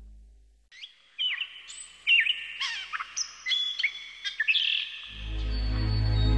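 Birdsong: a run of short chirps and whistled notes, starting after a moment of silence. Near the end a low, steady ambient music drone swells in beneath it.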